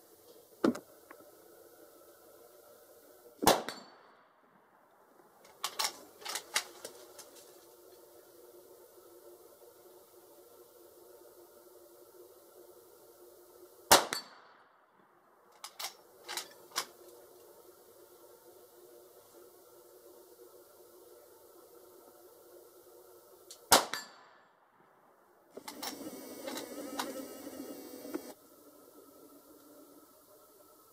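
Three gunshots from a Rossi R92 lever-action carbine with a 16-inch barrel in .44 Magnum, about ten seconds apart. Each shot is followed a couple of seconds later by a short run of metallic clicks as the lever is cycled. Near the end there are a few seconds of clattering handling noise.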